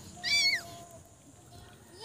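A child's short, high-pitched shout, rising and then falling in pitch, lasting about half a second just after the start.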